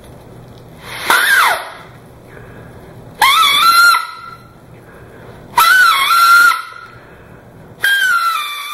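Folded paper whistle with two triangular cut-outs, blown by mouth so the paper flaps vibrate like a reed. It gives four loud, shrill squawks, each about a second long with short gaps between. The first bends up in pitch and falls away, and the others scoop up and then hold; the last starts near the end.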